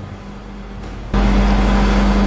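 Steady low electrical hum with background hiss and no speech. About a second in it jumps abruptly louder, the low hum much stronger, at an edit to a new take.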